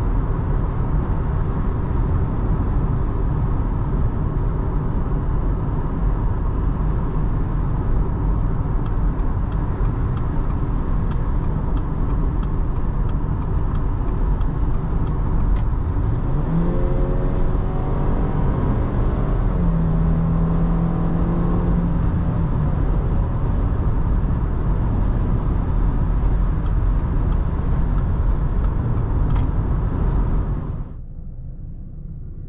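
In-cabin road noise of a Subaru Forester e-BOXER hybrid at motorway speed: steady tyre rumble and wind noise with its 2.0-litre boxer engine running underneath. About halfway through, a hum rises in pitch and then holds steady for a few seconds before fading back into the road noise. Runs of light regular ticks come through twice.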